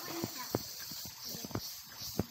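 A series of sharp, irregular clicks and knocks, about eight to ten in two seconds, over a faint steady hiss.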